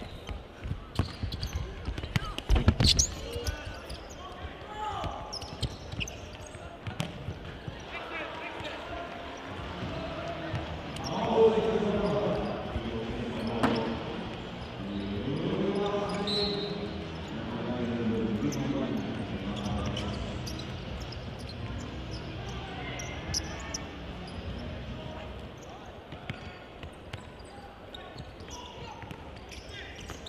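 Indoor football match in a large sports hall: sharp ball kicks and thuds echoing through the hall, the loudest a few seconds in, with indistinct shouting from players and spectators swelling in the middle.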